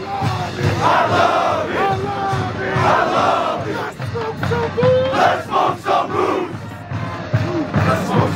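A football team shouting together in a tight huddle: a pack of voices yelling and hollering over one another, with some held shouts. Background music runs underneath.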